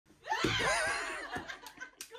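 A person's high-pitched laugh lasting about a second, followed by a few faint clicks.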